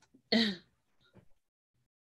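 A woman's single short laugh, followed by a few faint small sounds about a second in.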